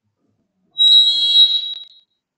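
PA system feedback squeal: a loud, high-pitched steady tone that starts suddenly about three-quarters of a second in, holds for about a second and fades out near the end.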